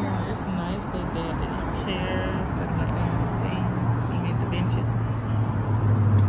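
Steady low rumble of road traffic and a running vehicle engine, growing stronger about halfway through, with brief snatches of a voice.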